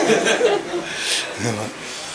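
A man chuckling.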